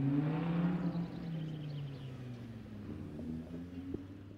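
A car engine running at low revs, its pitch swelling and easing gently, fading toward the end.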